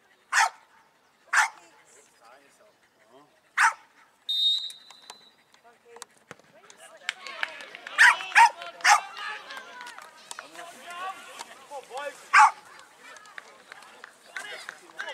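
A dog barks three times, then a referee's whistle gives one short steady blast for the penalty kick. From about seven seconds in, spectators shout and cheer the goal, with several loud yells.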